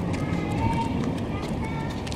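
Footsteps on a city pavement under a heavy rumble from a camera carried low while walking, with a few short, faint chirp-like tones above it.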